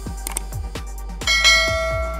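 A bright bell chime sound effect strikes once about a second and a quarter in and rings on as it fades. It plays over electronic background music with a steady kick-drum beat of about two hits a second.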